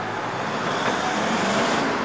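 A Mercedes saloon car pulling away and driving off down the street, its engine and tyre noise swelling slightly and then easing near the end.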